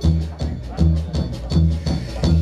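Upright double bass played slap-style in a steady rhythm of deep notes, about three a second, each with the click of the strings slapped against the fingerboard.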